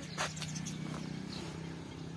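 Outdoor village ambience: birds calling, with one sharp short call or click about a quarter second in and faint high chirps later, over a steady low hum.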